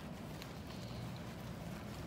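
Faint, steady outdoor background noise: a low rumble under a light hiss, with a few soft clicks.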